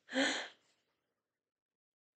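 A woman's brief breathy gasp, about half a second long, near the start.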